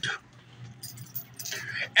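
Light metallic jingling and clicking, like keys jangling, over a low steady hum. The jingling comes in scattered clicks through the second half.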